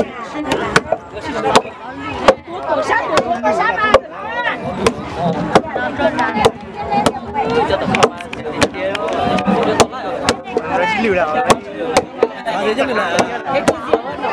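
Wooden mallets pounding steamed sticky rice in a wooden trough, sharp irregular strokes about two to three a second from more than one pounder, with crowd voices underneath.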